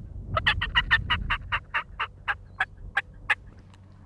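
A man calling like a wild turkey on a mouth (diaphragm) turkey call, hands cupped over his mouth. It is a fast run of about fifteen short, sharp yelps that starts quickly, slows, and stops a little past three seconds in.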